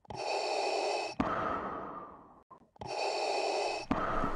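Darth Vader's mechanical respirator breathing: two slow, hissing breaths through the mask, each about a second long and ending in a click, with a short pause between them.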